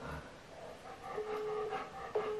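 French telephone busy tone heard through a phone's speaker: a steady beep lasting about half a second, starting a little over a second in, the start of a repeating on-off cadence. It signals that the line being called is engaged.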